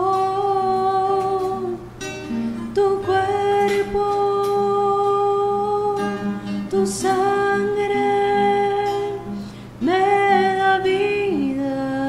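A communion hymn: a singer holding long, steady notes over plucked acoustic guitar.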